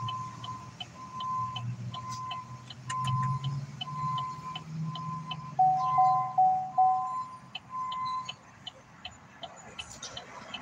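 Car's electronic warning chime beeping steadily about once a second, with a faint quick ticking alongside over a low hum. A second, lower beep sounds with it for a few repeats past the middle, and the chime stops a little before the end.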